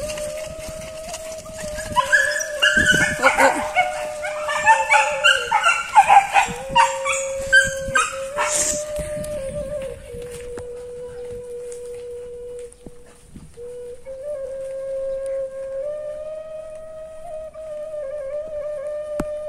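Hunting dogs yelping and howling in a loud, excited flurry for several seconds, from about two seconds in, over background music with a long held flute-like note.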